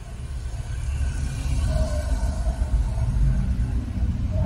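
A low rumble that swells over the first second and then stays loud, with faint steady higher tones over it.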